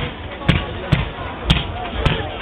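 Fireworks being fired in a rapid volley: sharp low thuds about twice a second as comets are launched, with voices in the background.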